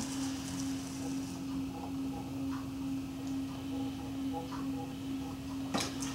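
Electric potter's wheel running with a steady low hum while wet hands squeeze the spinning clay wall inward to collar it, with faint rubbing of hands on wet clay.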